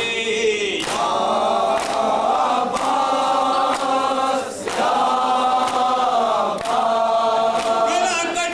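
Group of men chanting an Urdu noha in unison, with hand strikes on the chest (matam) about once a second keeping the beat.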